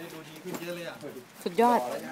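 Voices talking in short, broken phrases. The loudest sound is a drawn-out, rising-then-falling vocal call about one and a half seconds in.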